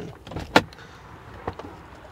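A sharp switch click, then the Ram 1500's power sliding rear window motor running quietly, with a smaller click about a second later.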